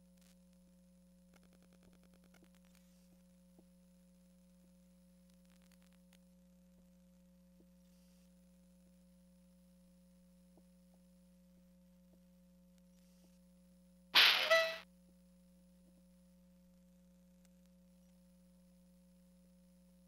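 Near silence with a faint steady hum, broken about 14 seconds in by a single loud, noisy sound lasting under a second.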